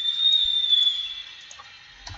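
A high, whistle-like tone that falls slightly in pitch and fades out after about a second, with a few faint clicks.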